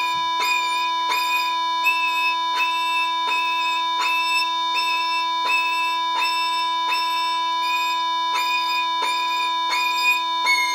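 Violin playing an E major scale exercise, each note bowed in short, separate stopped strokes, about three strokes every two seconds, over a steady sustained drone tone.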